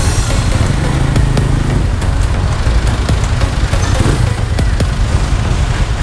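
Motorcycle engine running while riding, with wind rumble on the camera microphone and background music underneath; the engine note rises briefly about a second in.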